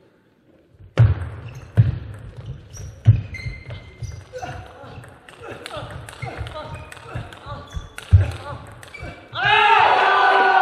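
Table tennis rally: the celluloid ball clicks off bats and table, mixed with several heavy low thuds on the court floor. Near the end a loud shout breaks out as the point ends.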